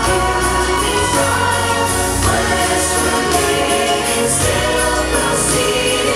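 A choir singing a Christmas song over instrumental accompaniment with a steady bass line.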